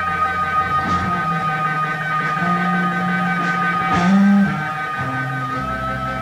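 Live blues-rock band playing without vocals: long held electric guitar notes over a moving bass line and drums, with a loud hit about four seconds in.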